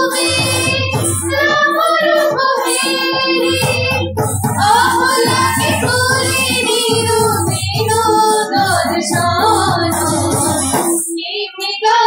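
Sambalpuri folk music: high female voices singing over drums and a steady held tone, with a short break just before the end.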